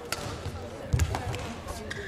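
Badminton rally on an indoor court: sharp cracks of rackets striking the shuttlecock and thuds of players' footwork. The loudest is a heavy thud with a sharp crack about halfway through.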